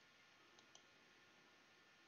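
Near silence with faint line hiss, broken by two faint clicks close together a little over half a second in.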